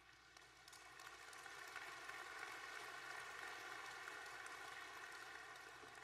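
Audience applauding: a spread-out patter of clapping that swells over the first couple of seconds, then holds steady.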